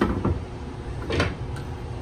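Table saw rip fence being slid along its metal rail and set, a short scrape at the start and a brief knock about a second in, over a steady low hum.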